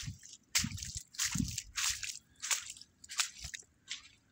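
Water sloshing and bubbling around the microphone in short, irregular bursts, about two a second.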